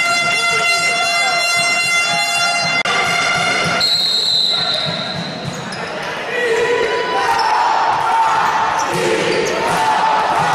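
Music cuts off abruptly about three seconds in, a referee's whistle sounds for about a second, and then the futsal ball thuds on the hardwood court among players' shouts, echoing in the sports hall.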